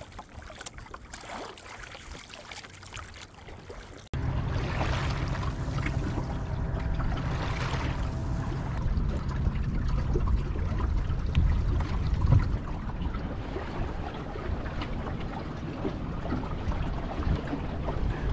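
Water trickling and lapping along the hull of a small sailing dinghy moving under sail in light wind. About four seconds in, the sound cuts abruptly to a louder, steadier rush with a low rumble.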